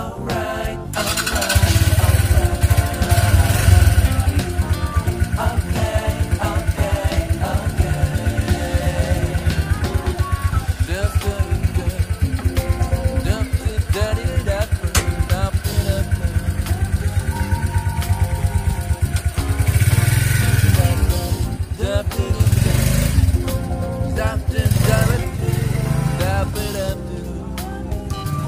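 Euro Keeway Cafe Racer 152's single-cylinder four-stroke engine starts about a second and a half in and runs with a fast, even beat. It is revved up a few times, around the third second and again near the end, with music playing over it.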